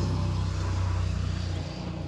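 An engine running with a steady low hum, under an even wash of noise.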